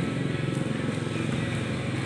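A small engine running steadily with an even low pulsing, like an idling motorcycle or tricycle engine.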